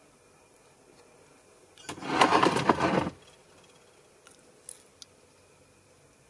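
A short burst of rustling handling noise, about a second long, starting about two seconds in, as containers on a pantry shelf are moved. Later come a few faint clicks, over quiet room tone.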